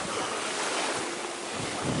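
Small waves washing onto a sandy beach with wind blowing across the microphone, a steady noise; a man's voice starts near the end.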